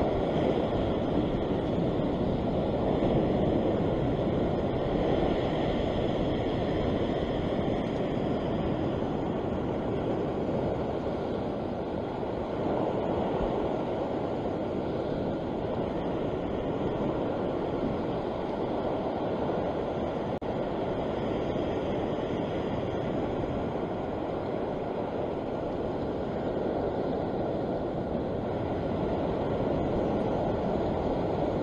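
Ocean surf washing over a rock ledge: a steady rushing wash that swells and eases slightly.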